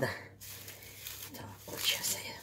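Plastic cling film rustling and crinkling as it is pulled open by hand, loudest near the end.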